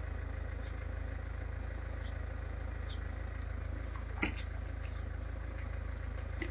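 A vehicle engine idling steadily in the background, a low, even rumble, with a single sharp click about four seconds in.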